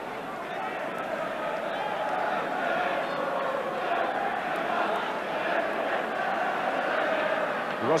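A large football stadium crowd, many voices together in a steady din that slowly grows louder.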